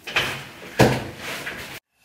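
Two knocks, the second and louder one about three quarters of a second after the first: a kitchen cupboard door being shut.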